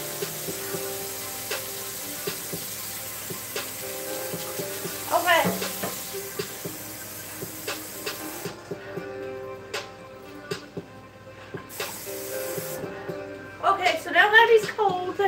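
Kitchen cold-water tap running, a steady hiss that cuts out a little after eight seconds in, comes back briefly and stops again near the end. Quiet music plays underneath.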